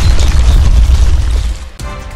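Loud, deep rumble of a landslide, rocks and earth tumbling down. It drops away sharply about one and a half seconds in, leaving music.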